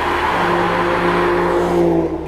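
Aston Martin DB9's V12 engine running at steady revs as the car drives, a loud, even engine note held throughout.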